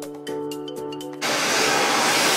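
Background music, cut off about a second in by a hair dryer blowing loudly and steadily.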